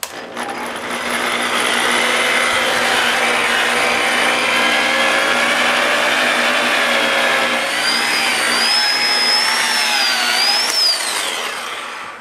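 Electric variable-speed machine polisher with a foam pad, set to speed three of six, running while it buffs polishing compound into the clear coat of a motorcycle fuel tank. The motor comes up to speed in the first second and then runs steadily, with a faint high whine that wavers in pitch late on, before easing off near the end.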